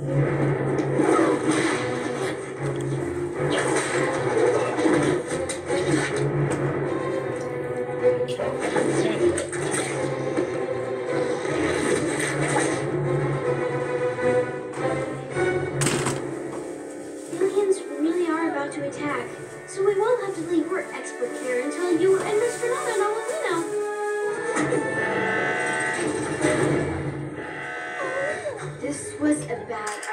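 Television show soundtrack: background music throughout, with voices over it from about halfway through.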